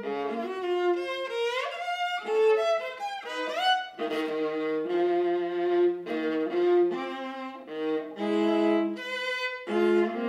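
Solo viola played with the bow: a run of notes with quick upward slides about two seconds in, and passages where two strings sound together.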